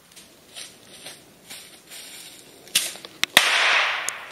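A small red bang rocket (Knallrakete) going off: faint crackling of its burning fuse, then a short hiss as it launches with no whistle, and a loud sharp bang a little over three seconds in, followed by a rush of noise that dies away.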